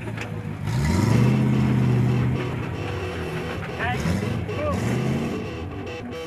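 Off-road rally car's engine revving up about a second in and holding high revs, then easing off and revving again near the end, as it is driven across a rocky riverbed.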